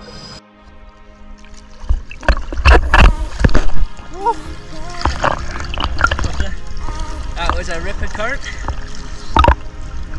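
Choppy sea water slapping and splashing against a camera held at the surface. The splashes are loudest from about two to four seconds in, after which a steadier wash of water continues.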